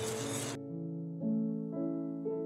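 Soft background piano music, its notes changing about every half second. Under the first half second a soft hiss, the dry whisking of flour in the bowl, cuts off suddenly.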